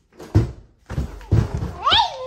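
A wooden interior door being worked off its hinges, with several dull thumps and knocks. Near the end a high cry rises sharply in pitch.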